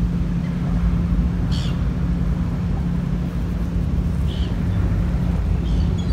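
A steady engine drone: a constant hum over a low rumble, with two faint ticks about a second and a half in and near the end.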